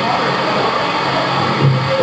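Live rock band playing on stage, amplified electric guitars and bass, heard through the room with a heavy wash of noise over it.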